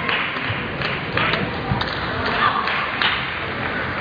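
Table tennis rally: the ball clicking off bats and table several times at uneven intervals, with a few low thuds, over steady sports-hall background noise and voices.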